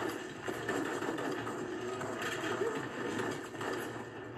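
Continuous rapid rattle of automatic gunfire in a film battle soundtrack, amid burning and smoke.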